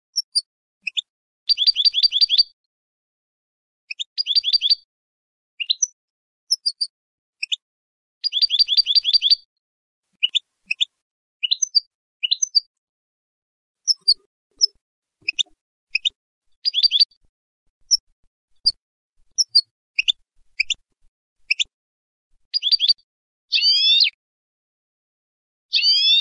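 European goldfinch singing: short bursts of rapid repeated twittering notes alternating with single high call notes, separated by brief silent gaps.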